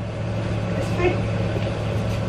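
A steady low hum, with a faint voice briefly about a second in.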